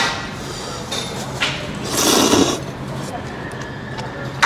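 A person eating Lanzhou beef noodles with chopsticks, slurping them from the bowl. The loudest sound is a short, hissy slurp about two seconds in, with a smaller one shortly before it.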